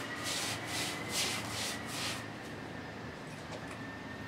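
A four-inch paintbrush scrubbing stabilising solution onto rough, absorbent render: rhythmic rasping strokes about two a second that stop a little after halfway.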